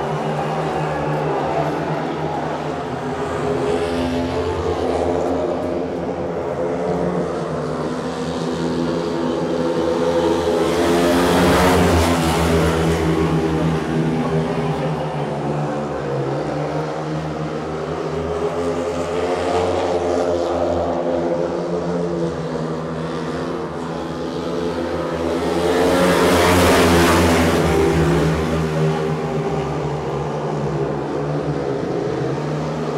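A pack of four speedway motorcycles racing, their 500cc single-cylinder methanol engines running flat out. The engine note rises and falls as the riders circle the track and swells loudest twice, about 11 seconds in and again about 26 seconds in, as the pack passes close by on successive laps.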